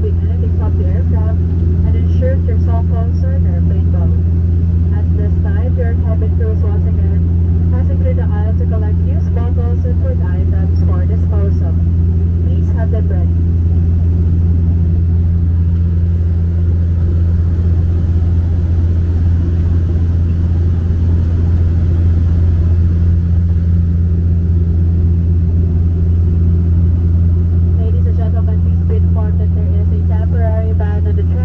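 Steady low drone of a turboprop airliner's engines and propellers heard inside the passenger cabin in cruise: a deep constant hum with a second, higher steady tone above it. Voices murmur over it for the first half and again near the end.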